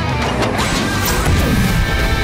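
Cartoon sound effects of a monster truck's rocket booster deploying and firing: a noisy crashing clatter with falling sweeps, over background music.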